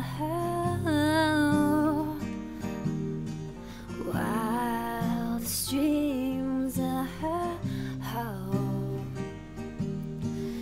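A woman singing long, drawn-out notes with vibrato over a strummed acoustic guitar.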